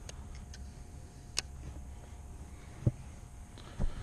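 A few sharp faint clicks and a couple of low knocks over a steady low rumble: handling noise from a fishing rod and reel in a kayak.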